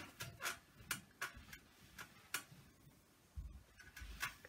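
Faint, irregular clicks and light knocks of a clothes iron being slid and pressed over a folded cotton edge on an ironing board, with a dull bump near the end.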